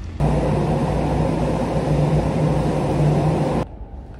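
Loud, steady running noise of a vehicle with a low hum, cutting in abruptly just after the start and cutting off abruptly shortly before the end.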